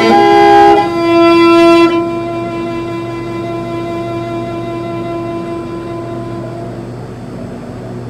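Morin khuur (Mongolian horsehead fiddle) being bowed, closing a piece: a short phrase of notes, then one long held note that drops in volume about two seconds in and fades away over the next several seconds.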